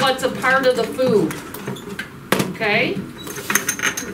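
Voices talking in a classroom, with a single sharp click a little over two seconds in and a few light clinks near the end.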